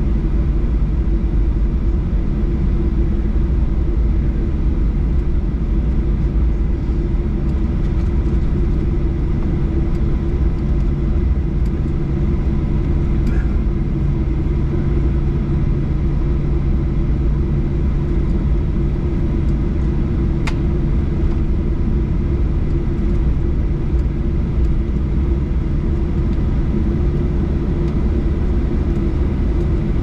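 Cabin noise of a Boeing 737-800 taxiing after landing: a steady low rumble from its CFM56 engines at idle thrust and the airframe rolling, with a held hum. A single faint click about twenty seconds in.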